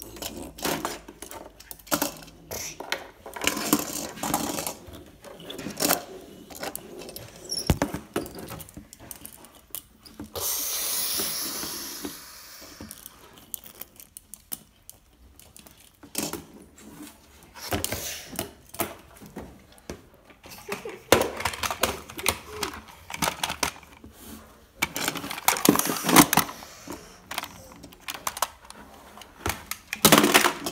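Plastic toys and Lego pieces clattering and knocking on a wooden tabletop as they are handled: irregular clicks and rattles in bunches. A hissing sound runs for about two seconds from about ten seconds in.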